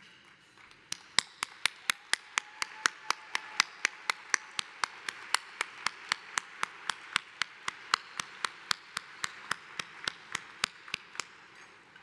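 Sharp hand claps very close to a podium microphone, at a steady pace of about four a second, over the applause of a large audience. The claps start about a second in and stop about a second before the end.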